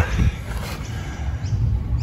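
Outdoor background noise: a steady low rumble with no distinct event.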